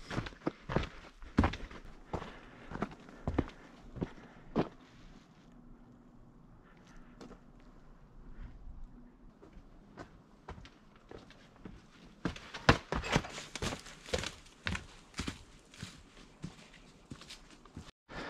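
Footsteps of a hiker on a dirt and rock forest trail, irregular steps that thin out in the middle and come louder and quicker in the last several seconds.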